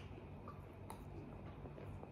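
Faint chewing of a Turkish sweet filled with macadamia nuts, with a few soft clicks, over a steady low hum.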